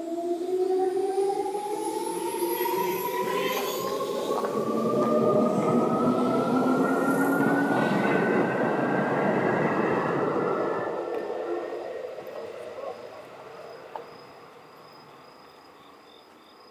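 Seibu 2000 series electric train accelerating, its traction motors whining in several tones that rise steadily in pitch, over wheel and rail rumble. The sound fades away after about ten seconds, leaving crickets chirping faintly.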